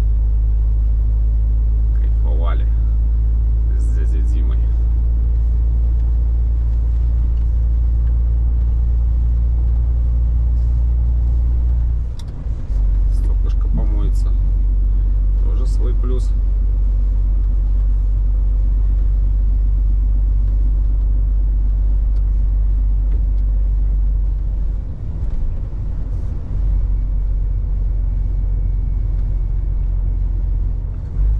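Inside the cab of a Scania S500 truck on the move: a steady low engine and road rumble, easing briefly about twelve seconds in and again near the end.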